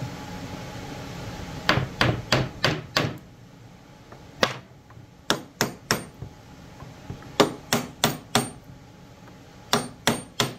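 Wooden mallet driving a glued dowel into a drilled hole in a small piece of wood: about fourteen sharp knocks in short runs of three to five, roughly a third of a second apart. The dowel is a tight fit.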